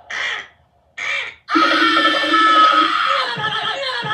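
Cartoon soundtrack playing on a TV: two short, harsh bird caws about a second apart, then a long drawn-out cry that slowly falls in pitch.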